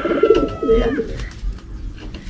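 Racing pigeon cooing, one low rolling coo in the first second, followed by faint small clicks and rustles.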